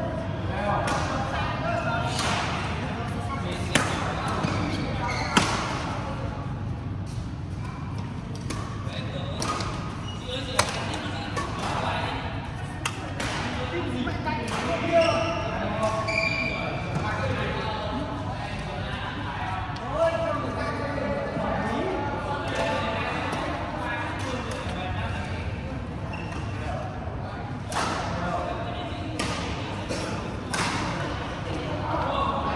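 Badminton rackets striking a shuttlecock, sharp pops a few seconds apart during a rally game, over a steady murmur of voices in a large sports hall.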